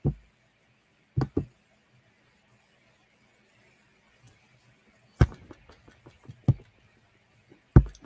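A handful of scattered short knocks: two close together about a second in, the loudest about five seconds in, more just after, and one near the end. Faint steady background hiss in between.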